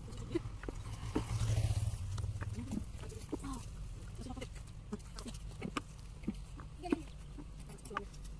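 Rumbling microphone handling noise from the hand-held phone about a second in, then scattered soft taps and rustles from hands working loose soil and potato plants, with a few brief low voice sounds.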